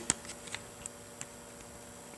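Quiet room tone with a few faint, irregular light clicks from hands handling the parts and the light around the engine block.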